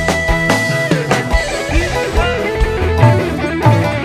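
Live campursari/dangdut band playing an instrumental passage: a lead melody with sliding notes over a steady drum beat and bass, with no singing.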